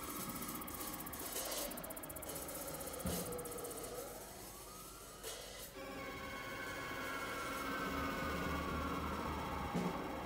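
Synthesizer keyboard playing long tones that slide in pitch, mostly falling, with one rising sweep midway, over a low sustained tone. A drum hit lands about three seconds in and another near the end.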